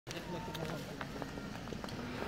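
Footsteps of a crowd walking on stone paving: many irregular, overlapping shoe clicks and scuffs, with low voices murmuring underneath.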